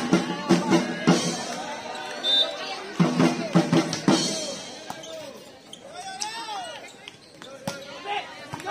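Volleyball rally: a series of sharp slaps of hands and arms striking the ball, bunched near the start and around the middle with one more near the end, over players and spectators shouting loudly.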